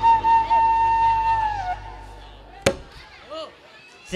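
Flute holding one long wavering note over a low drone; the note bends down and stops a little under halfway through. A single sharp knock follows, then a few faint short glides.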